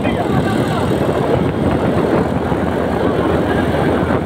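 Motorcycle riding at road speed: steady engine noise mixed with wind rushing over the microphone.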